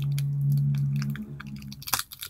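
Small crafting items and their packaging handled with clicks and crinkles, as a glued-down piece is worked loose. Under them runs a low steady hum that weakens after about a second and a half.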